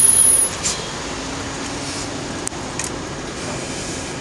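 Road traffic passing close by, a steady rush of noise that is loudest at the very start as a vehicle goes past, with a brief high squeal, then settles to a constant hum; a few faint clicks are heard.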